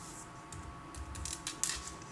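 A handful of light, sharp clicks from a computer being operated, mostly in the second half.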